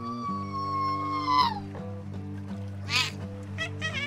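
Background music with a held, high-pitched cartoon creature squeal that drops away about a second and a half in, followed by a short warbling squeak about three seconds in and a few quick chirps near the end.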